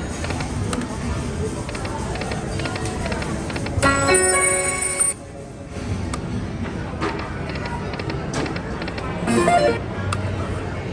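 Aristocrat Dragon Link video slot machine playing its electronic game sounds as the reels spin and stop. A bright chime tune about four seconds in cuts off suddenly and signals a line win, and a shorter jingle near the end marks another small win, all over a steady background din.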